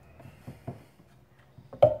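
A few faint clicks and taps of small parts and tools being handled on a wooden work board, with a sharper knock near the end.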